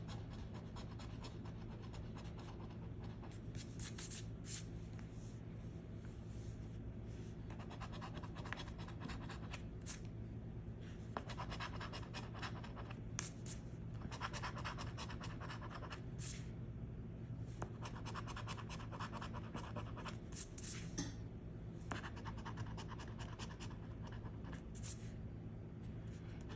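A coin scratching the coating off a scratch-off lottery ticket, in clusters of short strokes with brief pauses between them.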